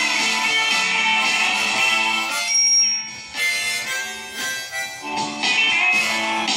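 A ten-hole diatonic harmonica in C plays an improvised melody over a backing track. About halfway through the accompaniment thins out and a single high note is held, then the full backing returns near the end.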